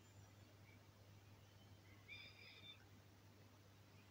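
Near silence, with a faint steady low hum from a running Shired TM-15000 VA voltage stabilizer, the hum expected of its transformer.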